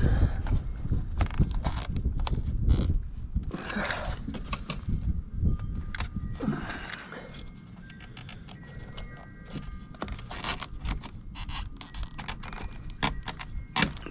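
Hand tools and metal parts clinking, knocking and scraping in irregular strokes as someone works on the underside of a snowmobile chassis, busier in the first few seconds, with a few brief faint squeaks in the middle.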